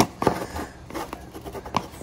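Plastic screw-top lid being twisted loose on a plastic jar: a few light clicks and scrapes of plastic on plastic.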